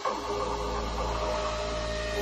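Techno breakdown: the kick drum drops out, leaving a steady low bass drone under held synth tones, with a higher tone coming in about a second in.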